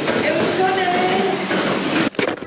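A loud, steady rushing roar inside a glacier ice cave, with a voice drawn out over it for about a second.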